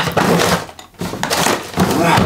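Rummaging through a pink plastic desk drawer: rustling and rattling of the loose contents and the plastic drawer, with a brief pause a little before the middle.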